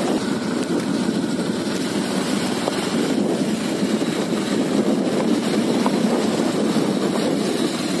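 Steady running noise of a motor vehicle travelling along a dirt road: engine and road noise without pause or change.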